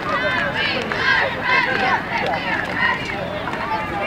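Many overlapping voices of football players and coaches talking and calling out at once, a steady jumble in which no single speaker stands out.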